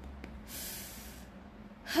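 A woman's short, sharp breath through the nose, lasting under a second, in a pause between words.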